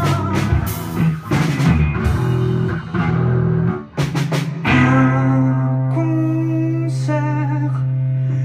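Live rock band playing electric guitars, bass and drum kit, with a singer. About four seconds in the drums stop and the band holds one long sustained chord over a steady bass note.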